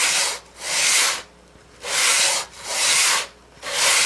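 Wooden edge of a fiddle plate section rubbed back and forth on 220-grit sandpaper laid flat: about five slow, even sanding strokes with short pauses between. The edge is being trued flat to close a gap in a joint.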